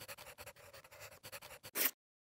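Short electronic noise sting: rapid stuttering, crackling pulses over a faint steady tone, ending in a louder burst that cuts off abruptly.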